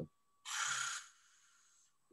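A single short breath or exhale into a video-call microphone, lasting about half a second, then silence.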